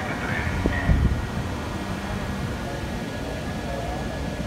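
Downtown city street ambience: a steady low rumble of vehicles, swelling louder about a second in, with faint distant voices.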